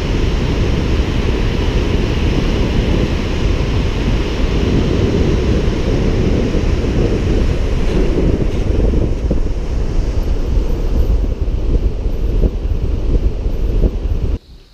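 Rushing white-water river rapids heard as a loud, steady roar, mixed with heavy wind buffeting the microphone that gives a deep, unbroken rumble.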